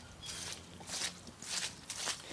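Soft footsteps squelching through wet, muddy ground, a few steps each second.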